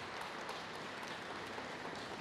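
A small congregation applauding: a light, even patter of many separate hand claps, fairly soft.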